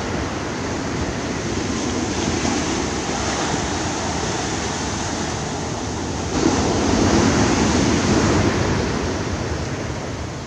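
Ocean surf breaking on a sandy beach: a steady wash of waves that swells louder as a wave breaks a little after six seconds in, then eases off.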